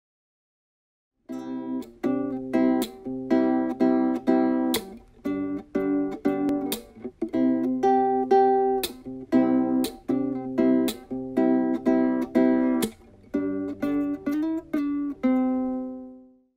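Children's wooden nylon-string guitar, the Hape Red Flame Guitar, strummed in chords in a steady rhythmic pattern. It begins after about a second of silence, and the last chord rings out and fades at the end.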